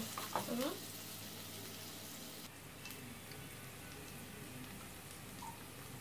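Chopped onions sizzling in oil in a nonstick frying pan, a steady even hiss of onions browning. A few strokes of a wooden spatula stirring them are heard in the first moment, then only the sizzle.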